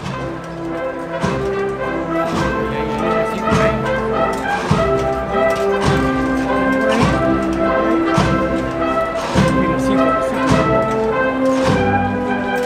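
Wind band playing a slow Holy Week processional march, brass carrying sustained melody notes over a steady drum stroke about once a second.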